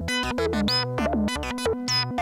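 Eurorack modular synthesizer playing a fast stepped sequence from a Doepfer A-155 analog/trigger sequencer: short plucky notes at about seven a second over a held low tone, several notes with a quick pitch swoop at their start.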